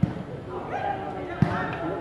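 A volleyball struck twice: two sharp thumps about a second and a half apart, with men's voices talking over them.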